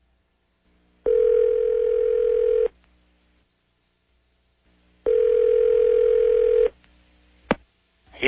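Telephone ringback tone heard over the phone line as a call goes through: two steady rings, each about one and a half seconds long and four seconds apart, then a sharp click near the end as the line is picked up.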